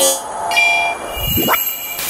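Electronic sound-design sting for an animated logo: a sharp hit, held synthetic tones, then a rising sweep that leads into another hit.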